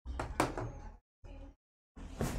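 A few short knocks and clunks of handling in the room, in three brief bursts with dead silence between them, the sharpest knock about half a second in.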